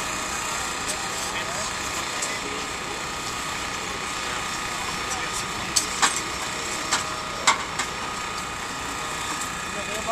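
Steady engine drone, typical of a portable hydraulic power unit running to drive rescue tools, with several sharp metallic clanks a little past the middle.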